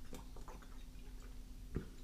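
A person drinking water from a bottle: faint swallowing and small mouth clicks, then one sharper click near the end.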